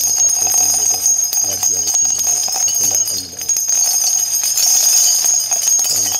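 A man talking over a steady high-pitched whine, with a few light clicks.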